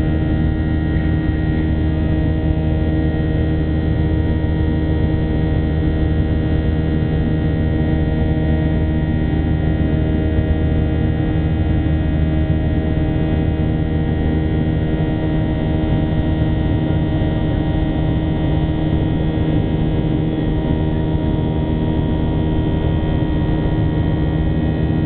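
Cabin noise of a Boeing 737-800 in its climb, heard beside its CFM56 engine: a steady, even drone carrying several steady tones. The deepest part of the drone eases about fifteen seconds in.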